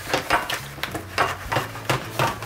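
Aluminium foil takeout pan crinkling and crackling as a board lid is pressed down onto it and the foil rim is crimped over the lid's edge, in a handful of irregular crackles.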